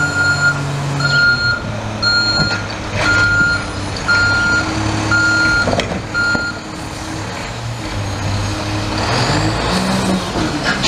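Automated side-loading refuse truck backing up, its reversing alarm beeping about once a second over the idling diesel. After about six and a half seconds the beeping stops. Near the end the engine speeds up with a rising pitch as the hydraulic arm lifts and dumps a recycling cart.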